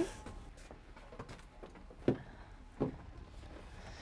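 Faint footsteps on a fishing boat's deck stepping into the wheelhouse, with two louder thumps a little under a second apart about halfway through.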